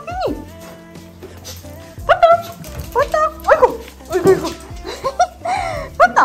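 Small dogs whining and yipping in excited greeting: a run of short, high cries that rise and fall, starting about two seconds in, over soft background music.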